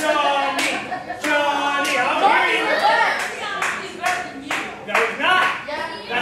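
Rhythmic hand claps at a pro wrestling show, about ten sharp claps that speed up from roughly one every two-thirds of a second to more than two a second, with voices shouting over them.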